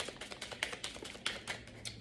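A deck of cards being shuffled by hand: a quick, irregular run of soft card clicks and riffles.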